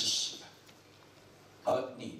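Speech only: a man's voice lecturing through a microphone. A word ends in a hiss, there is a pause of about a second, then another short syllable begins.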